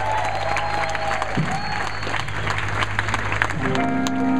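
Concert crowd clapping and cheering at the end of a rock song, over a steady low tone from the stage. Near the end, sustained electric guitar notes start to ring out.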